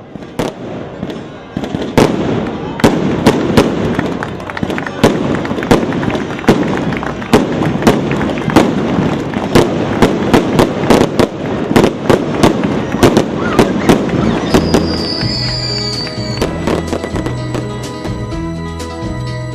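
A rapid, irregular barrage of loud firecracker bangs, several a second, from daytime fireworks set off as the statue arrives. Music comes in under the bangs in the last few seconds.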